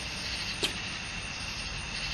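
Steady low background rumble and hiss, with one faint short click about two-thirds of a second in.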